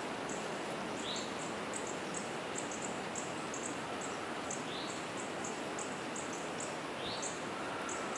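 Small birds chirping, many short high notes several times a second with an occasional brief rising call, over a steady hiss of wind.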